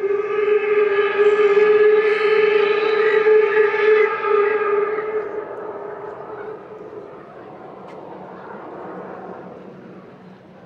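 One long horn blast on a single steady pitch, loud for about five seconds and then dying away over the next two.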